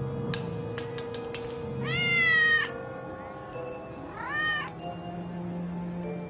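Cat meowing twice over soft background music: a longer meow about two seconds in, then a shorter one just past four seconds.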